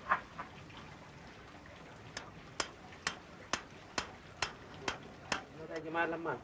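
A run of about eight sharp metal taps, evenly spaced about two a second, made on the iron stake and wire grill basket of an open-fire grill rig. A hammer is being used to lower the grill toward the coals.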